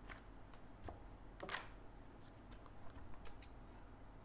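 A deck of tarot cards being shuffled by hand: a run of soft card slides and taps, with one louder swish about a second and a half in.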